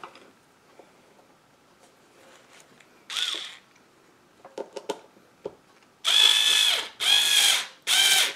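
Small cordless drill-driver driving a screw through a felt furniture pad into the wooden box: a short burst of the motor about three seconds in, a few light clicks, then three longer runs of the motor, one after another, near the end.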